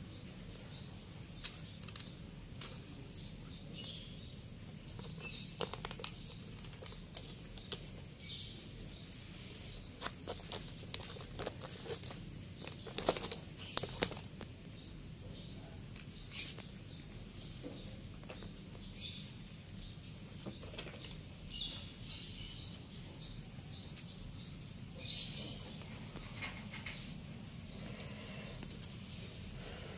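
Quiet outdoor background with a steady high-pitched hiss-like tone, short faint chirps, and scattered light clicks and scrapes; the busiest run of clicks comes about halfway through.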